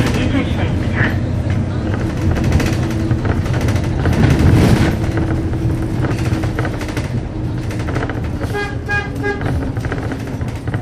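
Ride inside a moving city bus: steady engine and road rumble throughout, with a quick run of short pitched beeps near the end.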